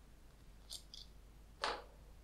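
A few light plastic clicks as a small clear plastic spray bottle is handled and its spray top taken off, the last one near the end the sharpest.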